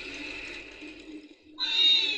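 Water running from a fountain tap and splashing into a metal basin for about a second and a half. Near the end comes a tiny, high-pitched cry that slides downward, like the scream of an elf on a water slide.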